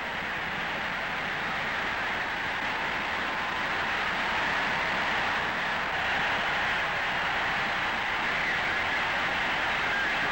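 Stadium crowd cheering, a steady din of many voices that grows a little louder about four seconds in.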